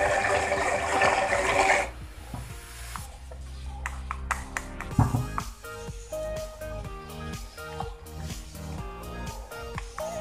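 Small battery-powered portable bottle blender running, blending a banana and oat mix, then cutting off about two seconds in. Background music with plucked notes follows, with a knock about halfway through.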